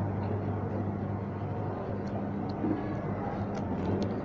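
Steady low hum and even background noise of a supermarket hall, with a few faint ticks near the end.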